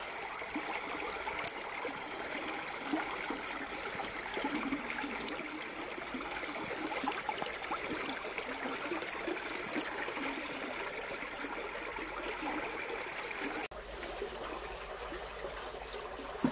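Shallow stream water running and splashing around a person wading through it in rubber boots, with an abrupt change in the sound near the end.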